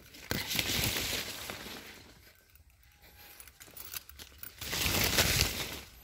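Rustling and crinkling as jackfruit leaves and branches brush past, in two swells of about a second and a half each: one near the start and one near the end.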